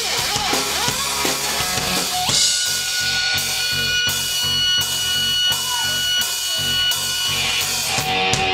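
Live rock band playing, with drum kit and electric guitar. About two seconds in the drums drop back and held guitar notes ring over a pulsing low end, until the full kit returns near the end.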